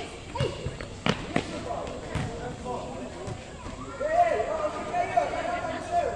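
Futsal ball being kicked and bouncing on a hard court floor: about five sharp thuds over the first three seconds. Then loud shouting voices in the last two seconds.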